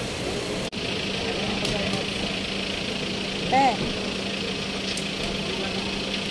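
Busy outdoor curbside ambience: crowd chatter over a steady low hum of idling vehicle engines, with one short loud voice call about three and a half seconds in.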